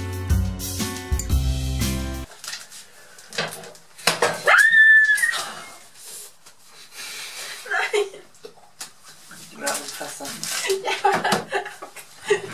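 Acoustic guitar music that cuts off about two seconds in. Then, about four seconds in, a loud high-pitched cry held for about a second, a yelp of pain from a kitchen knife falling onto a foot, followed by scattered exclamations and voices.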